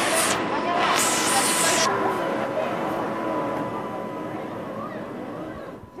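Indistinct voices over steady noise, with two brief bursts of hiss in the first two seconds.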